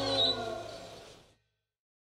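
Heavy metal outro music ending: a final electric guitar chord rings out and fades, with a wavering high note near the start, dying away to silence just over a second in.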